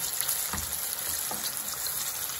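Cornflour-coated chicken wings frying in a pan of hot oil: a steady sizzle with a couple of faint pops.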